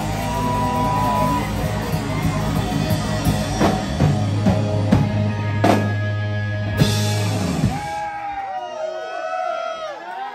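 Live rock band (electric guitar, bass, drum kit and keyboard) playing the closing bars of a song, with a few loud cymbal crashes, stopping about eight seconds in. Yelling and cheering from the audience follow.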